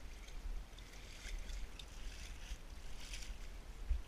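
Wind rumbling on a body-worn action camera's microphone, with scattered light scrapes and crackles of hands and shoes on rough rock during bouldering, a cluster of them about three seconds in.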